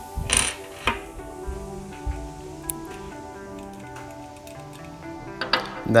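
Background music with steady tones, with two sharp metallic clinks in the first second as a trumpet's bottom valve caps are handled and set down on a wooden table.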